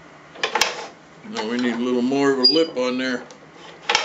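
Sharp metallic clicks, one about half a second in and one at the end, as a wood lathe's tool rest is set and clamped. Between them, a man's voice makes about two seconds of wordless sounds.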